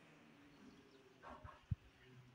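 Near silence: room tone, with a faint brief sound a little past halfway and a single short low thump just after it.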